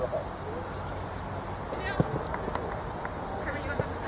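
Shouting voices of players and onlookers on an outdoor football pitch over steady background noise, with one sharp knock about two seconds in.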